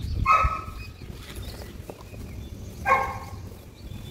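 Hands swishing and squelching through wet, gritty mud in a plastic tray, with low, uneven wet sounds. Two short animal calls, about two and a half seconds apart, are the loudest sounds.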